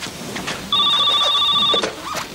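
Desk telephone ringing: one rapidly trilling ring about a second long, starting a little under a second in.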